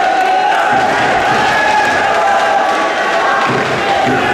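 Crowd of spectators in a sports hall shouting and cheering, many voices overlapping at a steady level.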